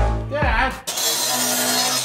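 Electronic music with heavy bass hits. From about a second in, a power miter saw cuts through steel tubing, a loud, steady grinding noise over a low motor hum, which stops abruptly.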